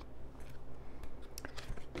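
Tarot cards being handled and drawn from the deck, giving a few faint soft clicks and rustles over a low steady hum.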